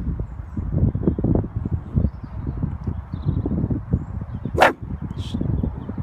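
Wind buffeting the microphone in irregular gusts, a low rumble, with one sharp click about four and a half seconds in.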